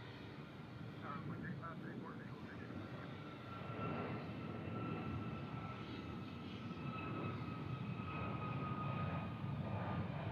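Airbus A321 jet airliner climbing out after takeoff: a steady engine rumble that grows louder, with a thin whine that slowly falls in pitch.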